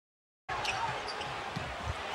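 Silence, then about half a second in, basketball arena game sound cuts in suddenly: crowd noise with a few sharp knocks of a basketball bouncing on the court.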